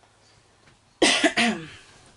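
A person coughing twice in quick succession about a second in, loud against a quiet room.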